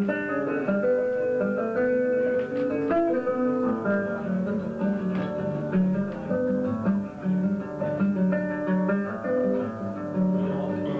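Nylon-string classical guitar played solo: an instrumental break of picked melody notes over a recurring low bass note, with no singing.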